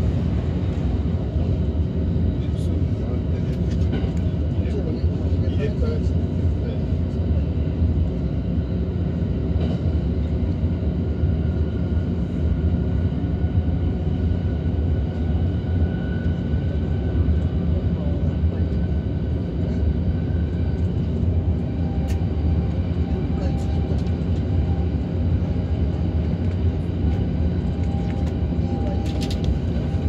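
Steady running noise of a Tokaido Line train at speed, the rumble of wheels on rails heard from inside a double-deck Green car. A faint thin tone comes in about halfway through, and a lower one near the end.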